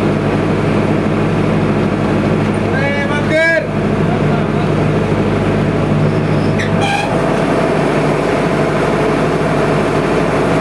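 Loud DJ remix music played through a large sound system, so loud that it overloads the phone's microphone into a dense, distorted wash with a steady bass. A voice shouts briefly about three seconds in, and again more shortly near seven seconds.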